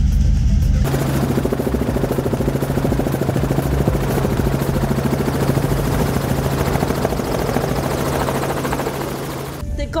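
Helicopter running loud, with a fast, even chop from the rotor blades over a steady low hum. The sound shifts from a dull cabin rumble to the full rotor sound about a second in.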